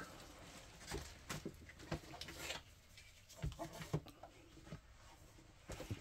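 Faint scattered rustles and light taps of a large paper map and game boxes being handled and laid out on a table.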